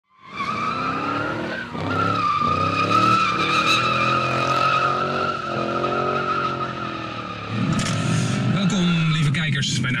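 Car tyres squealing in one long, steady screech with an engine running underneath. About seven and a half seconds in, the squeal stops and rougher engine and road noise takes over.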